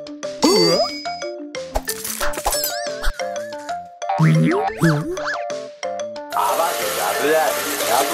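Cartoon background music with light plucked or mallet-like notes, layered with comic sound effects: a boing-like wobbling glide about half a second in, and wordless, nervous-sounding character voices around four to five seconds. A dense rushing noise comes in about six seconds in and runs on under the music.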